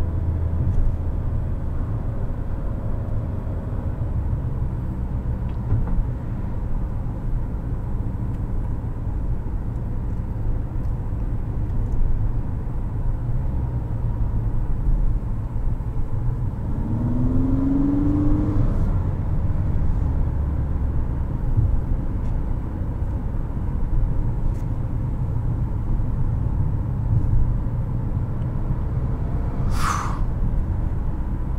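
Inside the cabin of a 2022 Infiniti QX55 at moderate speed: a steady low rumble from its 2.0-litre variable-compression turbo engine and the tyres on the road. A short rising tone comes a little over halfway through, and one sharp click at the very end.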